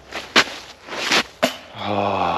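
A few short crunching and rustling noises as a disc golfer steps in snow and slush and throws a disc, with a couple of sharp clicks among them. Near the end the thrower's voice starts a drawn-out vocal sound.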